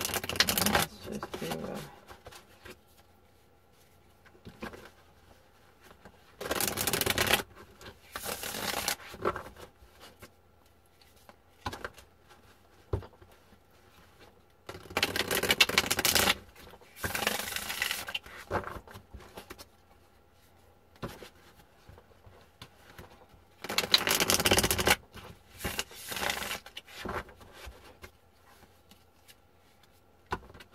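A deck of tarot cards being riffle-shuffled by hand: short rattling bursts of about a second each, mostly in pairs, with pauses between, as the two halves are riffled together and squared up again.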